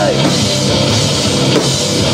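Live heavy metal band playing between sung lines: distorted electric guitars over a pounding drum kit, recorded loud from the audience.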